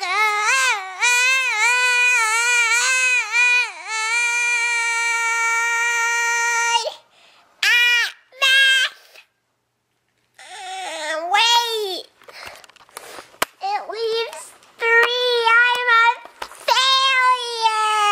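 A girl wailing in a high, wavering voice, like exaggerated crying, with one note held for about three seconds. The sound drops out completely for about a second near the middle, then the wailing resumes.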